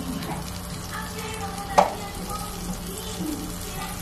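Butter melting and sizzling in a frying pan over a gas burner, a steady frying hiss, with one sharp click just under two seconds in.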